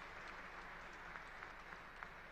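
Faint, scattered applause from a large seated audience: an even hiss of clapping with a few sharper individual claps standing out.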